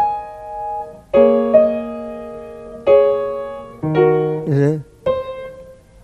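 Piano chords struck one after another, about once a second, each left to ring and fade as a melody is picked out slowly. A short vocal sound comes in about four and a half seconds in.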